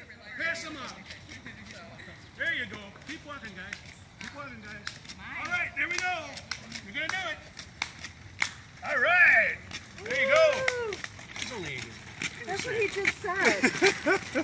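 Indistinct chatter of several walkers' voices, with footsteps and light clicks on a paved path; a laugh near the end.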